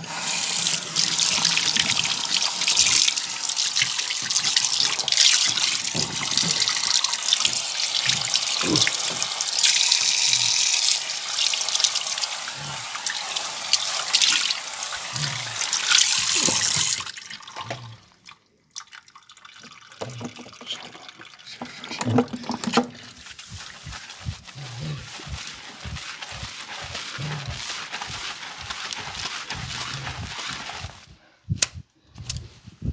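Water running from a tap into a sink, stopping about seventeen seconds in; after it, a quieter stretch with scattered short taps and clicks.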